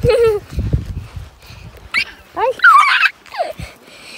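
A young child's wordless, high-pitched squeals and yelps in play: a short cry near the start, then a cluster of quick rising cries about two to three and a half seconds in.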